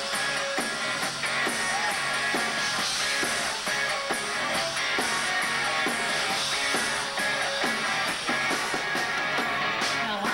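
Live rock band playing, with electric guitar and drum kit to the fore.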